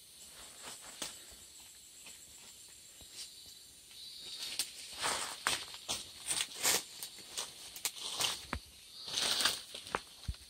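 Footsteps crunching and rustling through dry leaf litter, an irregular run of steps starting about four seconds in after a quiet stretch.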